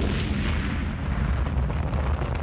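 An Atlas rocket exploding in flight: a loud, deep rumble of the blast that carries on steadily.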